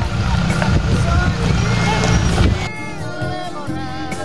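A Toyota Hilux pickup passing close by: a dense low engine-and-road rumble with faint voices over it. About two-thirds of the way through it cuts off suddenly into background music with strings.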